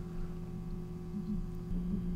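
A steady low electrical hum, with no other clear sound.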